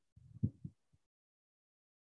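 A few soft, muffled low thumps in the first second, then silence.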